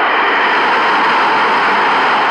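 A loud, steady rushing noise with no pitch to it, an added sound effect under the animated closing logo. It cuts in abruptly just before the logo appears.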